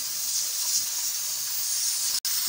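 Grated sweet potato frying in ghee in a pan, sizzling with a steady high hiss.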